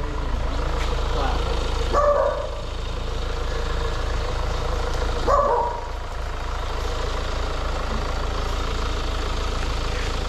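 Hyundai Tucson diesel engine idling steadily with the bonnet open, a constant low hum. Two short calls break through, about two and five seconds in.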